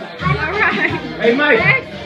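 Several people talking over one another: indistinct chatter, with no single clear voice.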